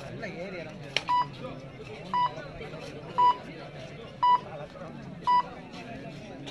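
Five short electronic beeps, all on the same pitch, about one a second, over the chatter of a crowd.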